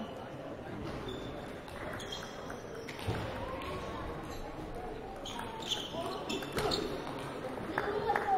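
Celluloid-type table tennis ball knocking off bats and the table: a handful of sharp, irregular clicks, most of them in the second half. Under them is a murmur of voices echoing around a large hall.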